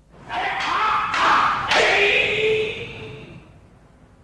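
Loud shouted kiai during a paired bokken exercise, with about three sharp wooden clacks of the bokken striking in the first two seconds; the last shout is drawn out and fades near the end.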